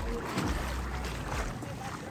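A horse wading in shallow sea water, its legs splashing through the surf, with wind rumbling on the microphone.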